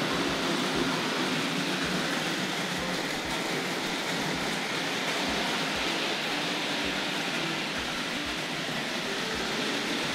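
Vintage 00-scale model trains running on the layout, a Tri-ang Princess and a Hornby Dublo Duchess of Montrose: a steady whirr and rumble of their small electric motors and wheels on the track.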